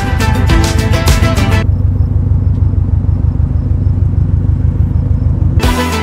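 Subaru WRX's turbocharged flat-four engine running as the car drives slowly across the lot, a steady low rumble. Background music plays over it, stops about a second and a half in, and comes back near the end.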